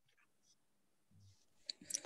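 Near silence, then a few faint, sharp mouth clicks near the end as a woman parts her lips to sing.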